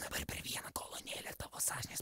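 A person whispering quietly, in short broken phrases.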